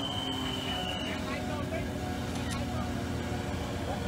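A vehicle engine running steadily under a low street hubbub of faint voices, with a thin high tone for about the first second.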